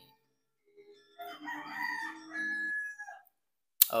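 A single long, drawn-out call of about two seconds after a moment of near silence, ending on a held steady high note.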